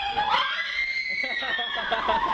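A child's long, high-pitched scream, rising and then falling slowly, over the shouting and chatter of other children at play.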